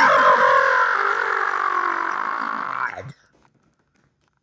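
A long, drawn-out human yell that sags slightly in pitch and grows hoarse and raspy, then cuts off abruptly about three seconds in.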